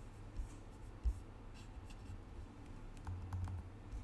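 Faint handling noise from an acoustic guitar held before playing: soft low bumps and a few light clicks and taps, with no notes played.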